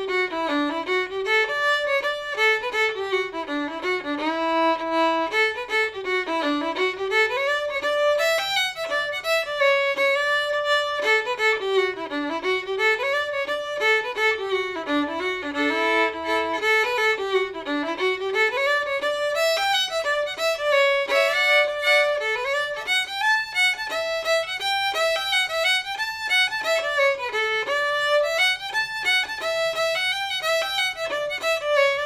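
Solo fiddle playing an old-time fiddle tune at a lively pace, the melody filled out with running eighth notes.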